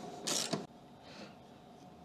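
A short creaking scrape, about half a second long, as a heavy battery cable and its lug are worked onto a busbar terminal.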